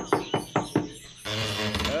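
Knocking on a door: a quick run of about five knocks in the first second.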